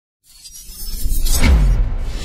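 Cinematic logo-reveal sound effect: a whoosh that builds with a glassy shimmer and peaks about a second and a half in with a deep low hit and a falling sweep, under music.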